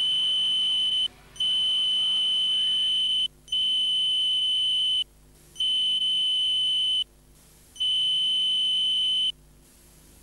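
A high, steady electronic censor bleep sounding five times in beeps of uneven length with short silent gaps between, blanking out spoken words, here the names of the people just announced.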